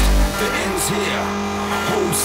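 Neurofunk drum and bass music: a loud deep sub-bass hit right at the start, then bending, gliding bass tones under recurring high hissy bursts of percussion.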